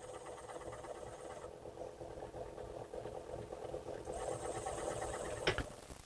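Small wood lathe running at low speed, a steady hum, with a short click near the end.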